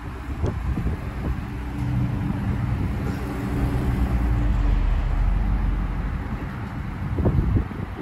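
Dodge Charger Scat Pack's 392 (6.4-litre HEMI V8) engine running at low revs as the car creeps slowly forward, a steady deep rumble.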